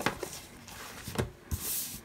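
A light knock about a second in, then a brief rubbing hiss near the end as loose paper planner pages are slid across the tabletop.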